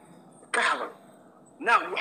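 A person clears their throat once about half a second in, a short rough burst through a live-stream audio feed; speech starts again near the end.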